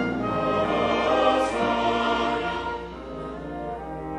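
Large mixed choir singing with a full orchestra in a classical choral anthem; the loud passage falls back to a softer level a little before the end.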